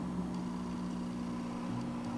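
A steady low hum with a faint hiss underneath, even and unchanging.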